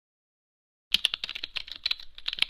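Computer keyboard typing sound effect: a quick, uneven run of key clicks, about ten a second, starting about a second in.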